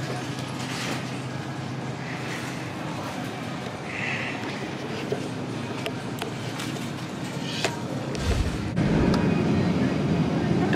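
Grocery store ambience: a steady hum and hiss with scattered faint clicks, and a low rumble about eight seconds in.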